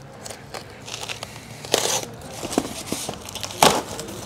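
A large flat cardboard shipping box being opened by hand: cardboard tearing, scraping and rustling in short irregular rasps, with a louder rip about halfway through and a sharp knock near the end.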